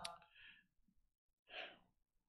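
A man breathing into a handheld microphone: a short sigh right at the start and an exhale about one and a half seconds in, otherwise near silence.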